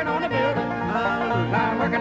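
A bluegrass band playing a gospel song: harmony voices sing over mandolin and acoustic guitar, with an upright bass walking back and forth between two low notes.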